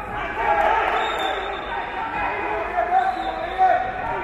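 Voices calling out without pause through a kickboxing exchange, with a few sharp thuds of gloved punches and kicks landing near the end.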